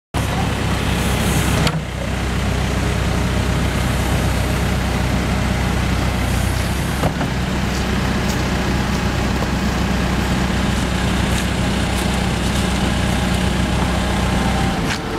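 Case backhoe loader's diesel engine running steadily, with a few sharp clanks partway through.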